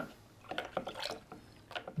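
Liquid being stirred with a wooden spoon in a plastic pitcher: a few faint, irregular taps and swishes of the spoon moving through the liquid and touching the pitcher's sides.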